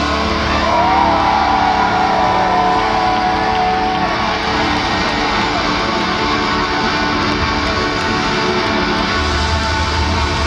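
Live rock band playing loud, distorted electric guitar over bass and drums, the lead line bending and sliding in pitch in the first few seconds.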